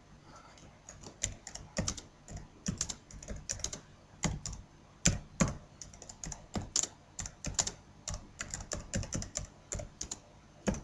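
Typing on a computer keyboard: a run of irregular keystroke clicks, a few a second, as a line of text is typed.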